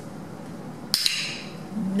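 A dog-training clicker pressed once about a second in: a sharp, bright double click-clack.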